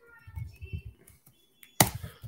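Faint handling sounds, then a sharp crackle near the end as a Pokémon card booster pack's foil wrapper is torn open.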